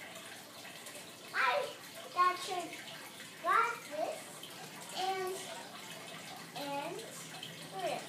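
A young child's voice making short vocal sounds that slide up and down in pitch, several times, over a steady background hiss.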